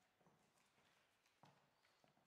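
Faint footsteps of high heels on a wooden stage floor, a click about every half second, the sharpest about one and a half seconds in.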